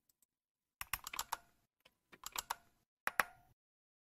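Faint clicking of a computer keyboard and mouse in three short bursts: about a second in, around two and a quarter seconds, and just after three seconds.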